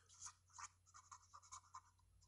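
Faint scratching of a pen on paper as a word is written by hand, in a series of short strokes.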